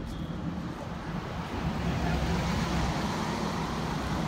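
A car driving past on the street, its engine and tyre noise growing louder over the first couple of seconds and staying loud as it comes close.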